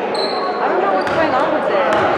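Basketballs bouncing on a hardwood gym floor, with sharp knocks about one and two seconds in, over overlapping voices echoing in a large gym.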